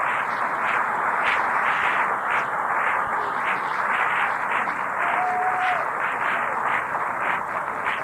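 Audience applauding, a dense steady clapping that holds the whole pause at about the loudness of the speech, heard on an old cassette recording.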